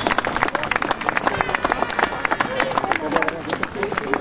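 Spectators clapping and applauding after a goal, with many separate hand claps and crowd voices mixed in.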